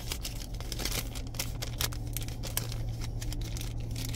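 A paper receipt rustling and crinkling as it is handled in the fingers, in short irregular crackles over a steady low hum.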